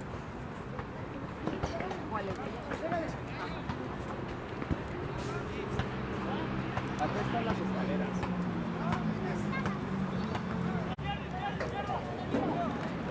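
Background chatter from players and onlookers along a football sideline: several voices talking at once in the open air. A steady low hum runs underneath for a few seconds in the middle, and the sound cuts out for a moment near the end.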